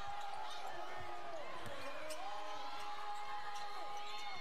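Basketball game broadcast sound: a ball dribbling on a hardwood court amid arena crowd noise, with a long steady tone held through the second half.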